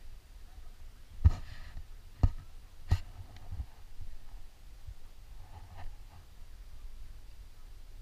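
Climbing carabiners clicking against bolted anchor chains as the rope is clipped in at the top anchor: three sharp clicks about a second apart, the first the loudest, over a faint low rumble.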